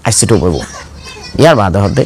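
Speech only: a man talking in bursts of a lecture.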